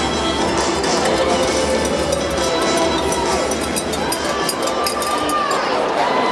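Music over the arena's PA system mixed with crowd noise and raised voices in a large ice hockey arena; the music's bass drops away near the end as play starts.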